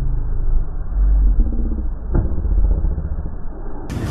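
A steady, muffled low rumble with a single sharp hit about two seconds in: a tennis ball struck by a racket.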